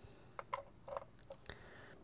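Faint clicks and light scrapes as a USB-A plug is pushed into the USB port of a portable power station, about five small ticks spread over two seconds.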